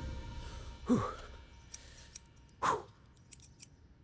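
Scissors snipping twice, about two seconds apart, as background music fades out.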